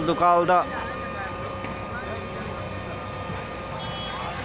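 A man's narrating voice stops about half a second in. The field sound of the street at a building fire follows: a steady noise with a faint steady hum and scattered, distant voices of onlookers.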